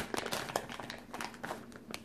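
Thin clear plastic bags crinkling and crackling in irregular bursts as wax melts are handled and lifted out of them, loudest at the start.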